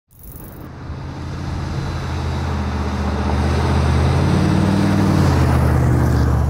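A motor vehicle driving, its low engine hum and road noise growing steadily louder over the first few seconds.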